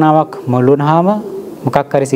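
A man's voice speaking in a sermon, with two long drawn-out syllables, the first held on a level pitch and the second rising.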